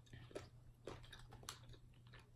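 Faint chewing and wet mouth clicks from people eating soft fudge-dipped cheesecake and brownie bites, with three short clicks about half a second apart.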